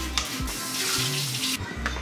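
Trigger spray bottle spraying cleaner onto a glass stovetop: a hiss lasting about a second, starting about half a second in, with background music underneath.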